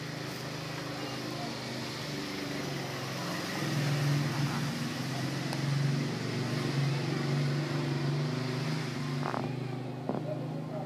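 A steady low motor hum over a background of noise, a little louder from about four seconds in.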